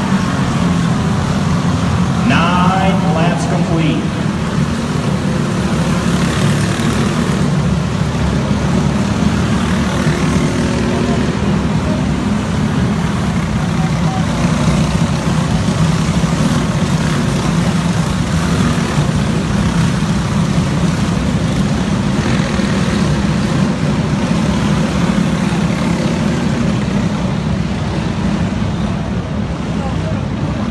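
Racing dirt karts' small engines running together as a pack, a loud steady drone of many engines at racing speed.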